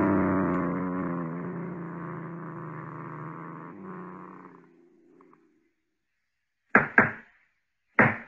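A cat sound effect: a long, low cat growl, loudest at the start and fading away over about five seconds. Near the end come two short knocks.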